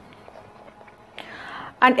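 Quiet room tone, then a short soft breathy hiss a little over a second in, like a sharp intake of breath. A woman's voice starts speaking right at the end.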